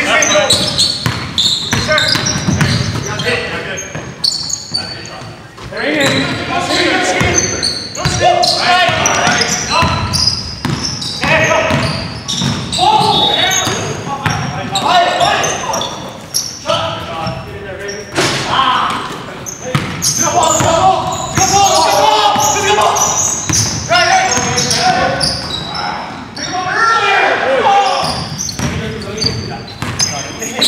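Basketball dribbled on a hardwood gym floor during play, repeated bounces echoing in a large hall, with players' voices calling out over it.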